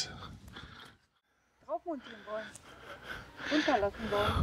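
Mostly quiet: faint background hiss, broken by about half a second of dead silence where the picture cuts. After that come short snatches of voice and a spoken 'Ja' near the end.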